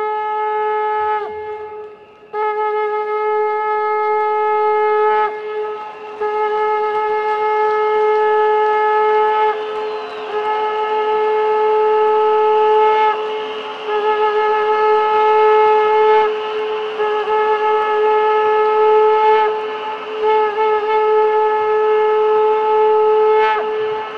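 Shofar blown in a series of long, steady blasts of about three seconds each, with short breaks between them. Each blast slides briefly up into its note, and a fainter, lower tone joins about ten seconds in.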